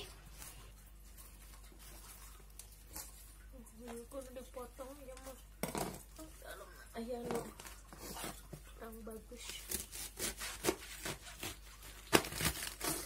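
Quiet handling of napa cabbage halves on a plastic cutting board: soft rustling of leaves with scattered crisp snaps, then a quick run of crisp crunches near the end as a knife cuts into a cabbage half. Faint voices are heard in the background.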